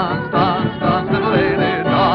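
Vintage dance-band recording playing a passage with a wavering vibrato melody over the band, in the narrow, dull sound of an old record transfer.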